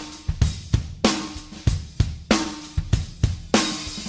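Background music: a drum kit playing a steady beat with cymbals and hi-hat, a heavy hit about every 0.6 seconds.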